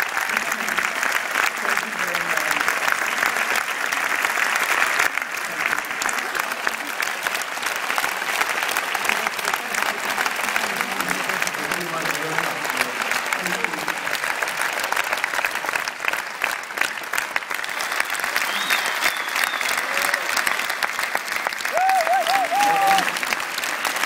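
Large audience applauding steadily and loudly for a sustained stretch, with a few voices calling out near the end.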